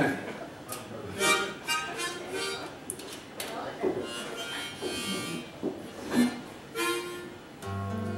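Harmonica blown in several short bursts of notes, a few seconds apart. A guitar strum comes in near the end.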